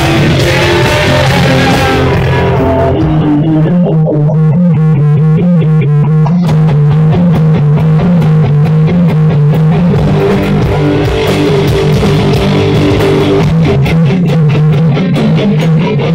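A live rock band playing loud, electric guitar and bass guitar over drums. About three seconds in, the drums and cymbals drop out for a few seconds, leaving the guitar riff over the bass, then the full band comes back in.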